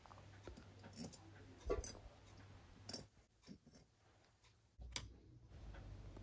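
Faint clicks and light taps of small aluminium carburettor parts being handled and set down on a wooden workbench: a few scattered knocks, with a dead-quiet gap in the middle.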